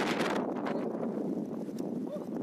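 Wind buffeting a phone's microphone: a steady rushing noise, loudest in the first half second, with scattered small ticks through it.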